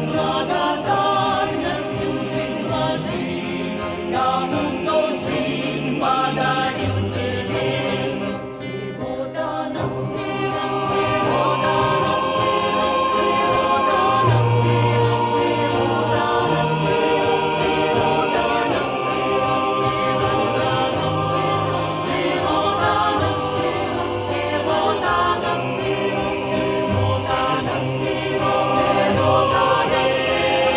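Mixed choir of men's and women's voices singing an Orthodox spiritual song in harmony, with acoustic guitar accompaniment.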